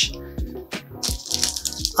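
Background instrumental music with a steady bass line and light percussion.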